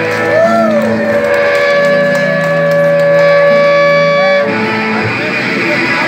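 Punk band playing live: electric guitars, bass and drums, with the guitars holding long notes that bend up and down in pitch.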